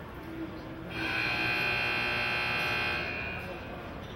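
Arena buzzer sounding one loud, steady tone for about two seconds, starting about a second in.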